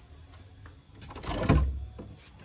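Wooden room door being opened by its handle, making one loud scraping creak that lasts under a second, just past the middle.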